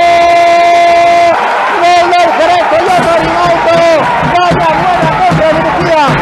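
A man's excited goal call: a long shout held on one steady pitch that breaks off about a second in, then rapid, excited commentary.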